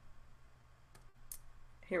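A single soft computer click about halfway through, as the presentation slides are advanced, over faint steady hiss.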